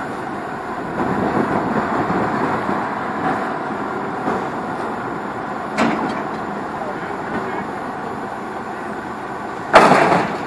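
Diesel engine of a heavy lattice-boom crane running steadily under load during a lift, with a sharp knock about six seconds in and a loud thud near the end.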